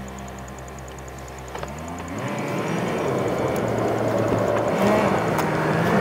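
Car engine idling steadily, then, just under two seconds in, rising in pitch as the car pulls away and accelerates, with tyre and road noise building and growing louder.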